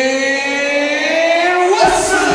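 A single long held note through the stadium sound system, slowly rising in pitch for nearly two seconds, then cutting off as the music starts.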